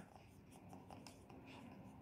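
Faint scratching of a pen writing on a textbook's paper page, filling in a short phrase.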